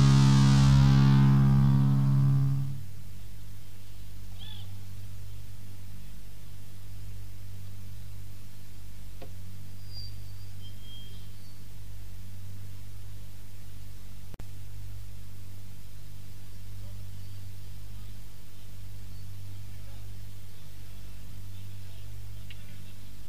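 A distorted electric guitar chord from a death metal band rings out and cuts off a few seconds in, ending the song. A steady low electrical hum with tape hiss then fills the gap before the next song on the live cassette recording.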